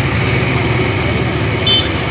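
Vehicle engines running with a steady low rumble, including a motor scooter passing close by. A short high beep sounds near the end.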